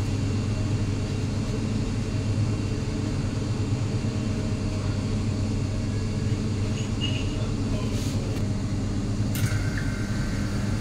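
Steady low machine hum of commercial kitchen equipment, with a few faint clicks near the end.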